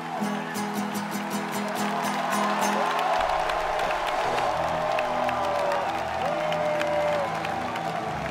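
Acoustic guitar and beaded gourd shaker music with a steady clicking rhythm, ending about three seconds in. It is followed by audience applause and cheering, with music underneath.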